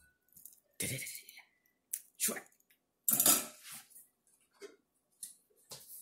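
A wire-mesh strainer knocking and scraping against a ceramic bowl as boiled udon is tipped out, in a few separate clattering bursts. The first, about a second in, carries a brief ringing tone, and the loudest comes about three seconds in, followed by a few light clicks.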